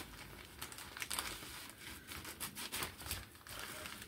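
Clear plastic bag crinkling faintly as it is handled and opened, in small irregular crackles.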